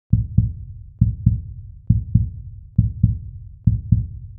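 Heartbeat sound effect: deep double thumps, lub-dub, a little under once a second, five beats in all, marking the guessing time.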